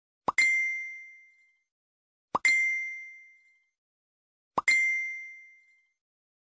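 A phone notification tone sounding three times, about two seconds apart: each a short pop followed by a high, ringing ding that fades away over about a second.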